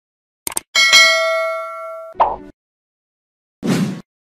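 End-screen sound effects: two or three quick mouse clicks about half a second in, then a bright notification-bell ding that rings for about a second and a half. A short rush of noise cuts the ding off, and another short rush of noise comes near the end.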